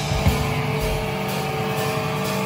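Live punk rock band: a last drum hit about a quarter second in, then the electric guitars and bass hold a ringing chord without drums.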